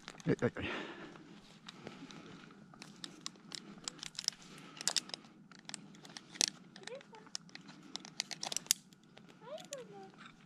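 Crinkling and rustling of a mesh rescue bag being handled among spruce twigs, a run of light irregular crackles and clicks.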